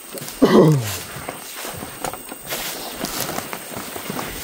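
A man's voice gives one short falling-pitched call about half a second in; the rest is a steady crackling and rustling of dry grass thatch and bamboo poles as men clamber about on a thatched roof.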